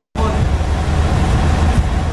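Loud, steady outdoor background noise from the field footage, a deep rumble under a hiss, that starts abruptly just after the start, typical of nearby road traffic.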